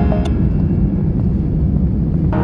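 Steady low rumble of an airliner cabin as the plane rolls along the ground, with one sharp click a quarter second in.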